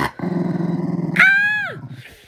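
Cocker spaniel growling low and steadily for about a second, then a higher, drawn-out vocal note that drops away at the end: a grumbling growl while she is patted on the head.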